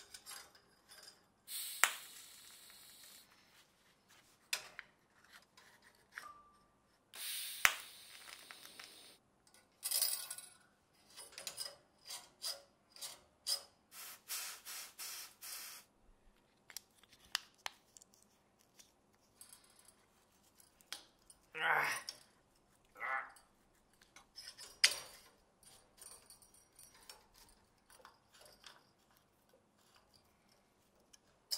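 Quiet workshop sounds of a small steel lever mechanism being built: scattered clicks and taps of metal parts, and short bursts of hiss, the first about a second and a half in as a TIG torch welds the bracket. A louder brief sound comes about three quarters of the way through.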